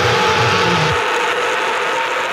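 Heavy rock music: a held, grainy guitar or synth chord sustains, and the bass and drums drop out about a second in, leaving only the held tones.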